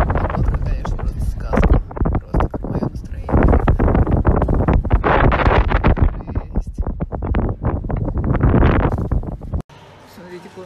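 Wind buffeting a phone's microphone outdoors: loud, gusty rumbling that swells and drops unevenly, then cuts off suddenly near the end.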